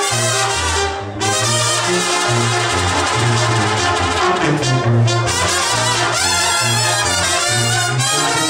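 A Mexican banda playing live in a loud, instrumental brass passage: trumpets and trombones over a tuba bass line that walks from note to note. The band drops out briefly about a second in.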